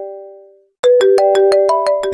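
Mobile phone ringtone: a repeating electronic melody of bright notes over rapid ticking. It fades out in the first half-second, stops briefly, then starts again sharply a little under a second in.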